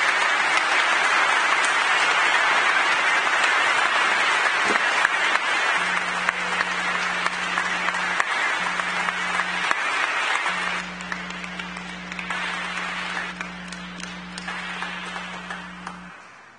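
Audience applauding, the clapping thinning out over the last few seconds. From about six seconds in, a low steady tone sounds beneath it, breaking off briefly twice.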